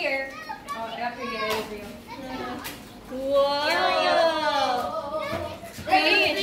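Young children's high-pitched voices calling out, the loudest a drawn-out call from about three and a half to five seconds in.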